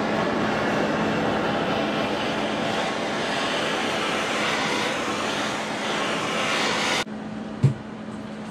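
Hand-held MAPP gas torch burning steadily, its flame played on a cast steel axle differential housing to post-heat a weld so that it cools slowly and evenly without cracking. The flame cuts off abruptly about seven seconds in, followed by a single sharp click.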